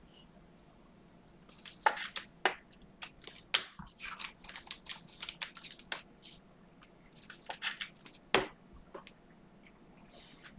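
Trading cards being handled on a table: a quick run of short clicks, taps and rustles starting about two seconds in, with the sharpest click near the end.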